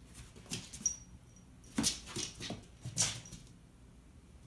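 A cat pouncing after a laser dot around a paper grocery bag on a hardwood floor: a few short thumps and scuffs of paws and paper, the loudest about two and three seconds in.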